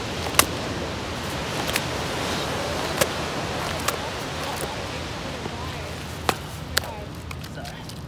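Steady wash of small surf on a sandy beach, swelling a little mid-way, with several short sharp clicks scattered through it.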